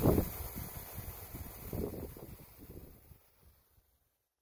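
Wind buffeting the microphone over the steady hiss of a running pop-up spray sprinkler, fading out to silence about three seconds in.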